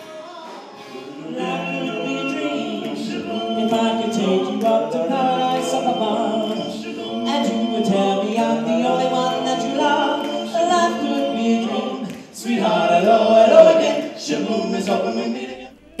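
Male vocal group singing a cappella in close harmony, coming in about a second in, with a brief break about twelve seconds in.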